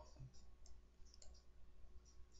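Near silence with a few faint, scattered clicks from a computer mouse and keyboard in use at the desk.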